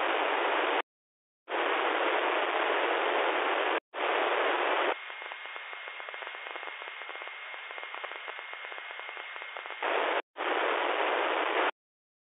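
Receiver hiss from an RTL-SDR dongle tuned across the 2 m amateur band, cutting in and out abruptly as the squelch opens and closes while the frequency is stepped. For about five seconds in the middle the hiss drops in level and a steady high whistle sits over it.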